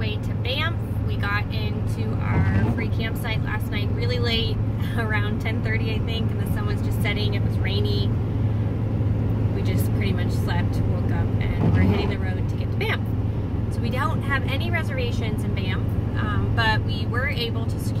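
A woman talking over the steady low drone of engine and road noise inside the cab of a moving truck.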